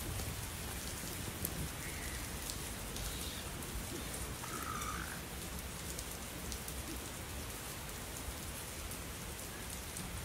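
Steady rain falling with a dense patter of drops. A couple of short animal calls rise above it about two seconds in and again around four to five seconds in.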